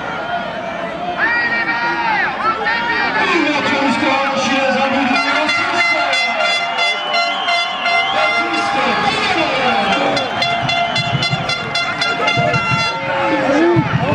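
Men's voices shouting and calling across an open football pitch. From about five seconds in until near the end, a steady pitched tone is held for about eight seconds under the voices.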